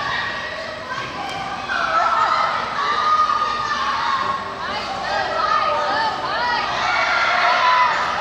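Many children's voices chattering and shouting at once, echoing in a large hall.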